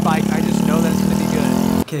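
Moped engine running at a steady pitch while being ridden; the sound cuts off suddenly near the end.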